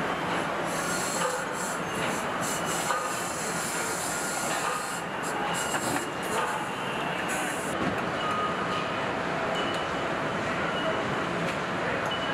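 Steady machinery din of a car assembly line, with short high squeaks and brief bursts of hiss scattered through it.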